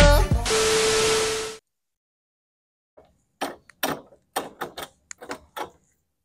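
Music with singing that ends on a held note about a second and a half in. After a short silence comes a quick, irregular run of about ten sharp metallic clicks and taps: a key being worked in a door lock.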